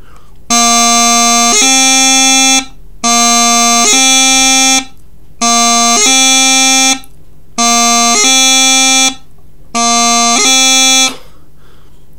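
Practice chanter for the Highland bagpipe playing low A up to B five times, with a G grace note on each change. Each pair of notes is a little shorter and quicker than the last.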